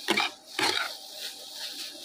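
Grated carrots frying in hot ghee in a steel kadhai, with a faint steady sizzle and two brief stirring noises from the spatula in the first second.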